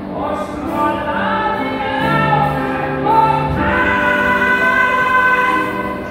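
A woman singing a slow song to grand piano and double bass. Her line climbs, and she holds one long high note from a little past halfway to near the end.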